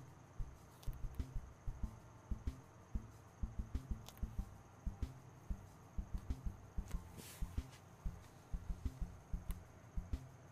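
Irregular soft low taps and thumps, a few a second, from brush work on the canvas and palette during acrylic painting, with a short hiss about seven seconds in.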